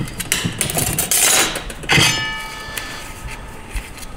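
Steel clutch plates and drum parts of a 6R80 automatic transmission clinking and clattering as they are handled, with one louder metallic clang about two seconds in that rings on briefly before fading.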